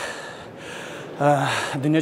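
A man's audible breath intake between phrases, then he resumes speaking a little over a second in.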